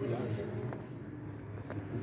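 A racing sidecar outfit's engine heard faintly in the distance as a low steady drone, picking up near the end as it approaches.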